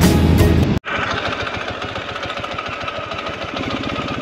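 Music that cuts off abruptly about a second in, followed by a motorcycle engine idling with a rapid, even beat.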